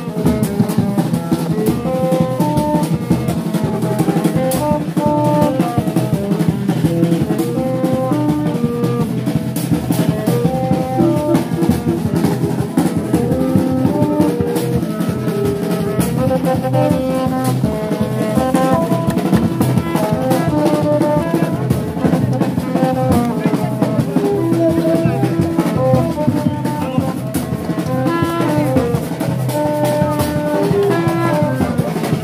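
Brass band music with drums: a horn melody moving in short stepped notes over a steady, driving drum beat.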